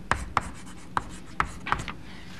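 Chalk drawing on a blackboard: about five sharp taps and short strokes as a diagram is started.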